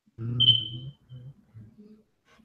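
A man murmuring 'mm', with a short, loud, high-pitched beep sounding over it for about half a second, then a few faint low vocal sounds.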